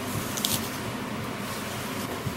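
A small child biting into a slice of apple and chewing it, with one short crisp crunch about half a second in.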